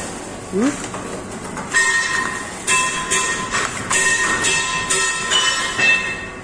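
Paper bowl (dona) making machine running, its die press cycling about once a second. Each stroke brings a brief high metallic tone over a steady mechanical clatter.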